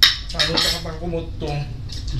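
A metal fork clinks sharply on a ceramic plate, the loudest sound, followed by more cutlery tapping and scraping on the plates while eating.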